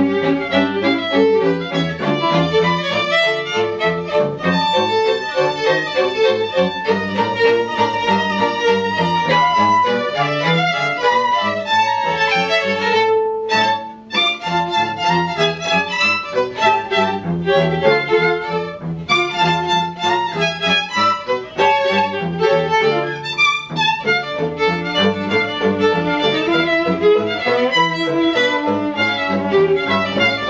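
String quartet playing a ragtime arrangement: violins on the melody over cello, played with the bow throughout, with a brief drop in level about halfway through.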